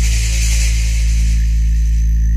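Background music with a sustained low drone, and a burst of hissing noise at the start that fades away over about a second and a half, like a swoosh transition effect.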